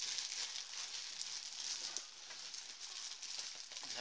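Plastic trash compactor bag crinkling and rustling as gear is stuffed down into it, a steady run of fine crackles that starts suddenly.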